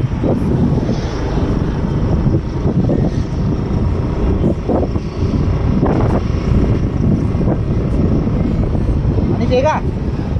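Loud, steady wind rumble on the microphone of a moving bicycle riding along a road, with passing traffic mixed in.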